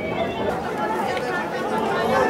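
Several people talking over one another: indistinct chatter of voices with no single clear speaker.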